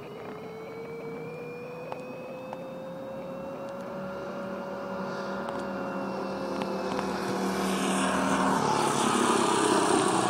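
Small engine of a mini motor-trike running hard, its pitch slowly climbing and then easing off, growing louder as it comes closer and passes.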